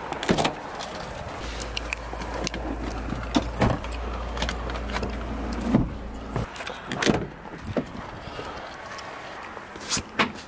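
A Ford F-150 pickup's door latch clicks open, followed by scattered knocks, clunks and rustling as hands work over the rear seat and seatbelt buckles inside the cab. A low steady hum runs under it through the middle few seconds.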